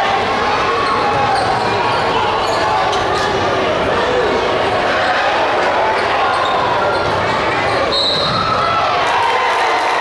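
Basketball being dribbled on a hardwood gym floor during live play, under a steady din of crowd voices and shouts echoing through the gym.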